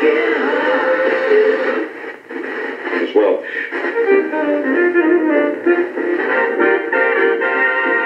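Music playing from a vintage Panasonic flip-clock radio's small speaker, thin and narrow-sounding. As the tuning dial is turned, the station drops out about two seconds in with a brief smear of tuning noise, and different music comes in about a second later.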